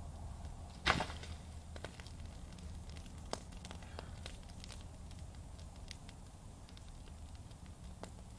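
Small open fire crackling, with a sudden loud burst about a second in as a shower of sparks flies up, followed by scattered sharp pops.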